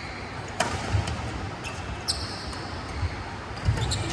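Badminton rally: sharp cracks of rackets striking the shuttlecock, loudest about half a second in and again near the end, a brief high squeak of court shoes on the synthetic mat about two seconds in, and low thuds of footwork, echoing in a large hall.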